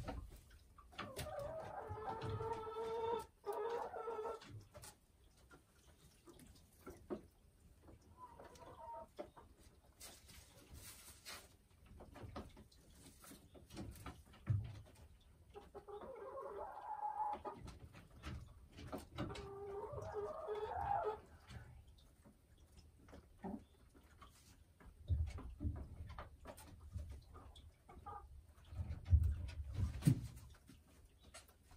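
A hen clucking in two drawn-out bouts of calls, one near the start and one in the middle, with a few dull low knocks near the end.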